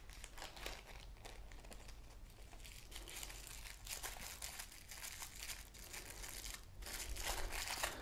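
Small plastic zip-lock bag and tissue-paper wrapping being handled and unwrapped, a faint, irregular crinkling that gets busier and louder near the end.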